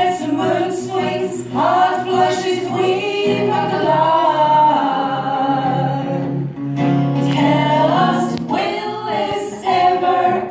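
Women's vocal group singing in harmony, performed live with acoustic guitar accompaniment; long held notes in the middle, a short break about six and a half seconds in, then the singing picks up again.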